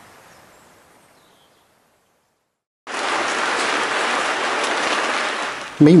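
Steady hiss of rain that cuts in suddenly about three seconds in, after a faint background fades away into a moment of silence.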